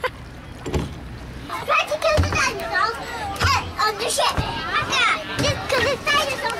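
Young children's voices, chattering and squealing at play, starting about two seconds in after a quieter opening.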